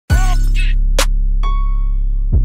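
The opening of a hip hop beat: a deep, steady bass starts with a sharp crash-like hit, then two more sharp hits come about a second and a second and a half in, the last leaving a ringing tone.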